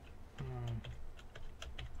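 Computer keyboard typing: a quick run of several keystrokes in the second half, while a letter is deleted and retyped.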